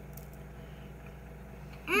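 Steady low background hum with no other distinct sound, then a child's appreciative 'Mmm' on tasting a Welsh cake just before the end.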